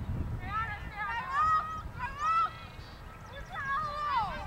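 Geese honking: a flock's overlapping calls in two bursts, the second near the end, over low wind rumble.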